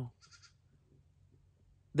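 A goat bleating once, faint and brief, about a quarter second in; the rest is near silence.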